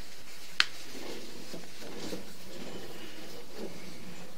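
Steady background hiss with one sharp click about half a second in, followed by faint scattered knocks and rustles.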